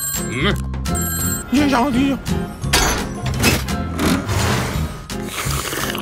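Cartoon background music with a steady bass line, joined about one and a half seconds in by a short wordless wavering hum from a cartoon character, with brief high ringing and comic sound effects around it.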